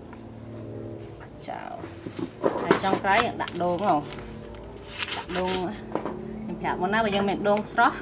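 High-pitched voices in short, sing-song bursts starting about two and a half seconds in, like children talking or singing in the background.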